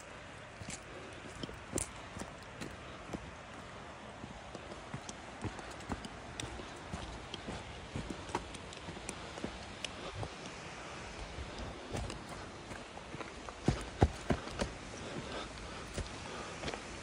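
Footsteps on a dirt and rocky mountain path: irregular crunching steps and knocks of shoes on stone, about one or two a second, loudest near the end, over a steady background hiss.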